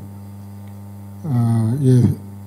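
Steady low electrical mains hum, two fixed low tones, picked up through the handheld microphone's sound system. A man's voice comes back over it a little over a second in.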